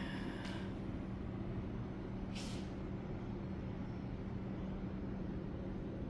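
Steady low hum with a low rumble underneath, and one short hiss about two and a half seconds in.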